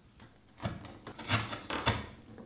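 Fishtail chisel paring wood out of the back corner of a half-blind dovetail socket: three short scrapes of the steel edge on the wood, about half a second apart, the last two the loudest.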